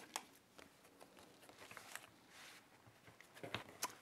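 Faint handling of paper and card: soft rustles and light taps, with a couple of sharper clicks near the end.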